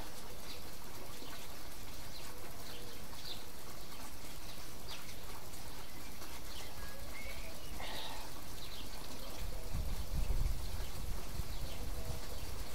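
Steady background hiss of an outdoor recording with faint, scattered bird chirps. A low rumble near the end.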